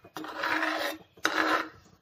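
Stainless steel ladle stirring thick yogurt curry in a pot, scraping the pot in two strokes, each just under a second long.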